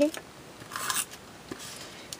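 A double-sided tape runner rolled along the edge of a paper card, giving a short rasping scrape about a second in.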